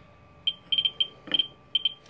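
Geiger counter's audio speaker giving short, high pips at uneven intervals, about eight in two seconds. Each pip is a detected count from the uranium glass under its pancake probe.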